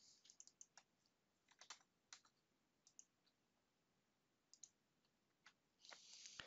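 Near silence with scattered faint clicks of a computer mouse working a software settings panel.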